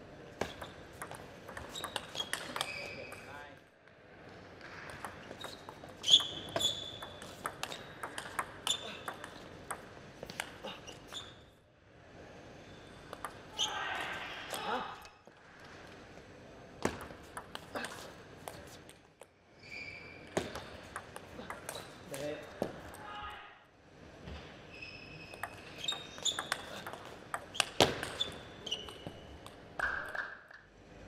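Table tennis rallies: the ball clicks sharply off the players' bats and the table in quick exchanges, in several bursts separated by short pauses between points.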